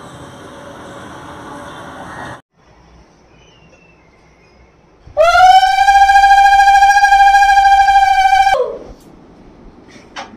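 Conch shell (shankha) blown in one long call of about three and a half seconds, starting about halfway in. The pitch rises into a steady note and sags as the breath gives out, the customary sounding of the conch at a Lakshmi puja.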